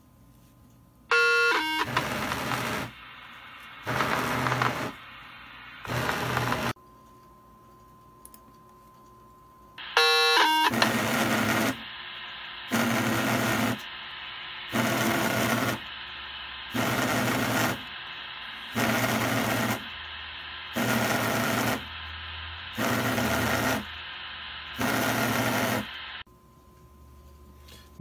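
A short buzzing tone burst from a handheld radio picking up the pager data transmission, followed by bursts of hiss; about ten seconds in a second burst comes, and then Long Range Systems restaurant pagers go off together, buzzing in pulses about every two seconds that stop near the end.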